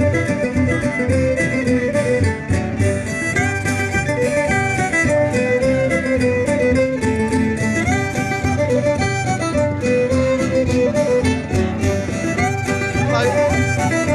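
Live folk string band playing a lively dance tune: the fiddle carries the melody over strummed acoustic guitar and banjo.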